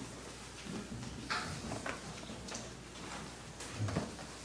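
Faint room noise: a few light knocks and rustles scattered through the pause, over a steady low hum, with a soft thud near the end.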